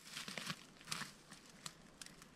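Irregular crackling and rustling close to the microphone, with a few sharp clicks, the strongest about half a second and one second in.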